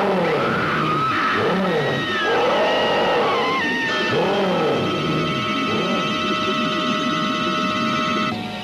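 Eerie horror-film soundtrack: wailing tones that rise and fall again and again, over sustained high tones, with a few sliding, falling cries near the middle.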